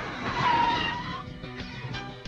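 Motorcycle skidding to a stop on gravel, a sliding, squealing skid that peaks about half a second in and fades within a second, over background music.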